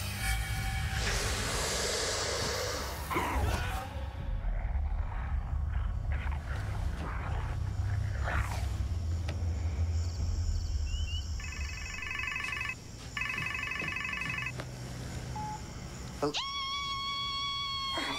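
Soundtrack of a TV drama: dark background music with a low rumble and a noisy swell early on. Later a phone rings in two short bursts. Near the end comes a long, high, steady screech.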